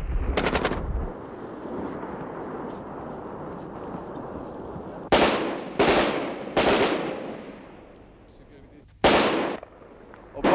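Battle gunfire: a short burst of rapid machine-gun fire at the start, then a few seconds of lower rumble. Three loud single reports follow about 0.7 s apart, each dying away slowly, and a fourth comes near the end.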